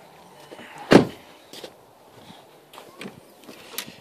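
A single solid thump from the Jetta's body as a latch and panel shut or release, about a second in, followed by a few faint light clicks.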